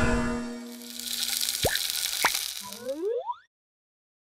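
Cartoon music score with comic sound effects: the music fades to a held note, then come two quick falling plops about half a second apart and a short rising glide, and everything cuts off to silence about three and a half seconds in.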